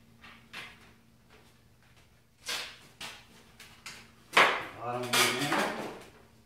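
Wooden frame pieces of a 1x3 brew stand being handled and bolted together: a few light taps and a short scrape, then a sharp wooden knock about four and a half seconds in, followed by more rubbing and clatter.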